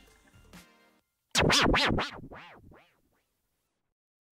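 An edited-in transition sound effect: a quick run of swishing sweeps that rise and fall in pitch, about three a second. It starts about a second in and dies away like an echo over about a second and a half.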